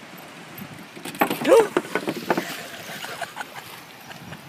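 A voice calling out over steady outdoor air noise from about a second in, with a run of sharp knocks and clatter over the next two seconds.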